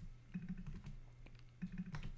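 Typing on a computer keyboard: a scatter of soft, irregular key clicks over a faint low hum.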